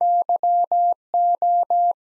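Morse code sidetone, a single steady pitch of about 700 Hz, sending at 17 wpm: dah-di-dah-dah (Y), a short gap, then dah-dah-dah (O), the first two letters of the word "you".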